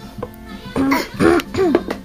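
A toddler's voice: a few short, wordless vocal sounds with a rising and falling pitch, in the second half, over steady background music.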